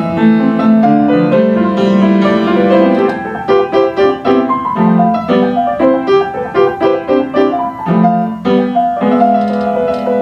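Upright piano played solo: held chords at first, then from about three seconds in a run of quicker, separately struck notes, settling back into held chords near the end.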